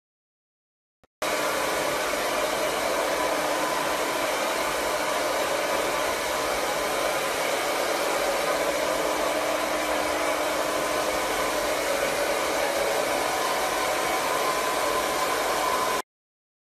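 Electric blow dryer running at a steady pitch, switching on abruptly about a second in and holding constant.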